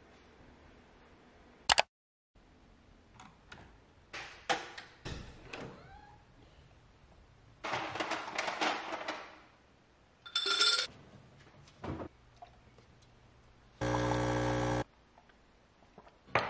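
Kitchen handling sounds: a sharp click, then knocks and rustling as food is taken from the freezer. A short high beep comes about ten seconds in, and a steady, buzzing one-second electronic beep from a kitchen appliance near the end.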